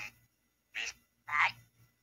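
Ghost box sweeping through radio frequencies: three short, chopped bursts of radio noise about half a second apart, with silence between them.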